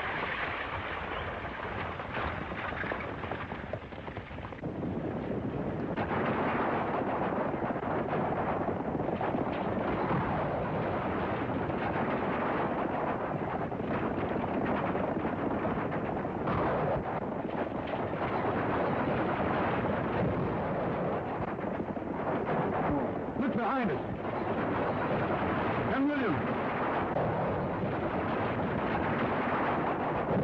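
Horses galloping and a stagecoach rumbling in a chase on an old, noisy film soundtrack, with sharp cracks of gunfire all through it.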